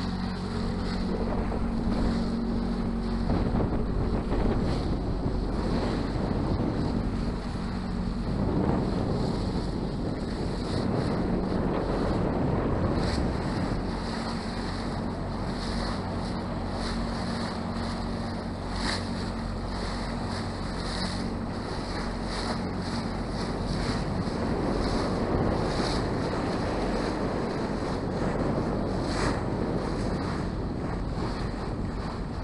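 A sailing yacht's engine running steadily as a low hum, with wind buffeting the microphone and water washing past the hull.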